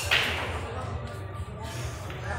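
A sudden short swish of clothing brushing past the microphone right at the start, fading within about a third of a second, over a low steady hum.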